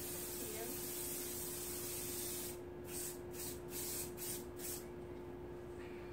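Aerosol spray can spraying: one long continuous spray of about two and a half seconds, then five short sprays in quick succession.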